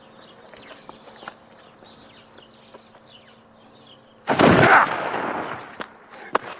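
A single black-powder shot from a harquebus, an early muzzle-loading gun, about four seconds in: a sudden loud blast that dies away over a second or so.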